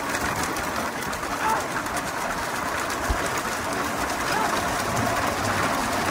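Bullock carts racing along a tarmac road: a steady rushing rumble of cart wheels and hooves, with a few short high calls.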